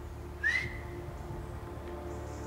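A single short whistle about half a second in, rising and then held briefly: a stalker's whistle to stop a muntjac doe so she stands for a shot.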